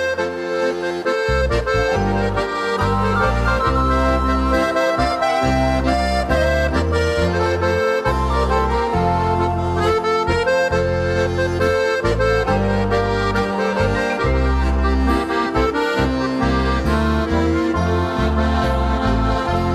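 Accordion playing the melody of an instrumental break in a hymn, over a studio-arranged backing with a moving bass line and a steady beat.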